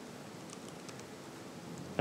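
Faint room hiss with a few light clicks of a laptop keyboard as a word is typed.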